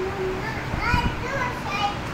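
Young children's voices, short high-pitched chatter and calls.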